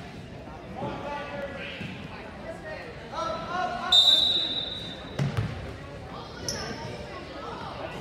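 Referee's whistle blown once about halfway through, a steady shrill blast of about a second, over voices calling out in a gymnasium. A basketball bounces on the hardwood just after the whistle.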